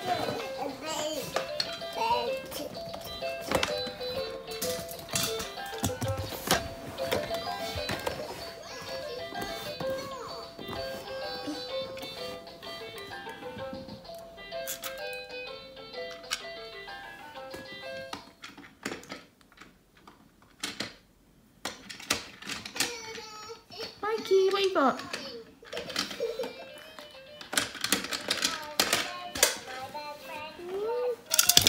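Electronic baby activity table playing a simple tune of stepped notes for roughly the first eighteen seconds, with sharp clicks and knocks from its plastic buttons being pressed throughout. A toddler vocalises in the later part.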